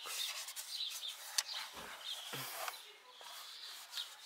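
A cloth rubbing and wiping over a car's steering wheel and plastic airbag cover in uneven scratchy strokes, with a sharp click about a second and a half in and a couple of soft thumps.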